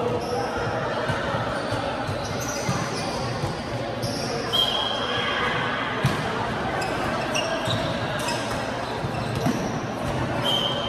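Light volleyball being played in an echoing sports hall: the light ball struck by hands a few times, the clearest hit about six seconds in. A shoe squeaks briefly on the court floor about halfway through.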